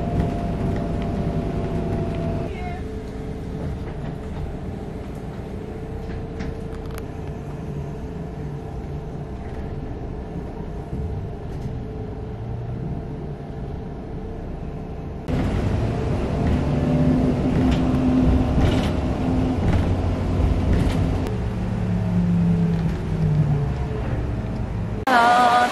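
City bus engine running and road noise heard from inside the bus cabin, a steady low rumble. It gets louder from about two-thirds of the way in.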